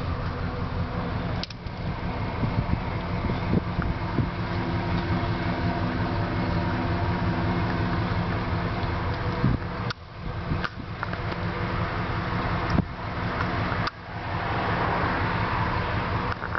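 Steady low hum of the 1992 Ford E-150 van running, heard inside its cabin, broken by a few brief dips about a second and a half, ten and fourteen seconds in.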